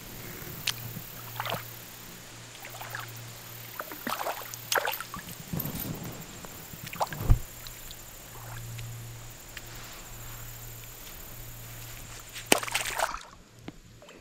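Shallow creek water sloshing and trickling, with scattered small splashes and clicks over a low steady hum, and one sharper thump about seven seconds in.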